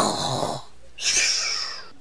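A person's loud breathing: a short breath with a faint voiced groan at its start, then a longer hissing breath about a second in.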